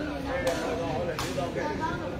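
Two sharp kicks of a sepak takraw ball, about three-quarters of a second apart, over spectators' voices.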